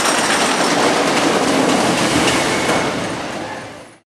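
A wooden roller coaster train rumbling and clattering along its track. The sound fades out over the last second.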